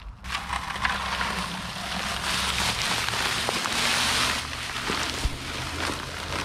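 Dry concrete mix poured from a bag into a plastic bucket of water, a steady hiss with a few small clicks, starting suddenly just after the start.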